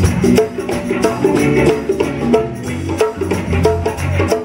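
Live funk band playing a jam: a steady bass line and drums under busy hand percussion on congas.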